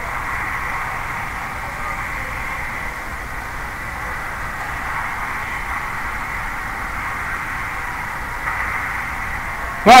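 Steady, featureless hiss with a faint high steady whine: the recording's background noise, with no distinct sounds in it. A man's voice says "Alright" at the very end.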